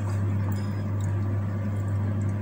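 A steady low hum, with a few faint light clicks as a glass of water is picked up.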